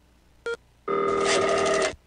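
Telephone ringing sound effect: a brief tone blip about half a second in, then one trilling ring lasting about a second.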